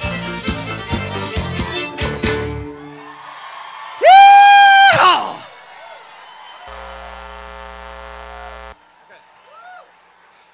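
A live country-rock band plays the last beats of a song and stops about three seconds in. About a second later comes one very loud held vocal shout or whoop that falls away. A steady sustained keyboard-like chord follows and cuts off near the end, leaving faint whoops from the crowd.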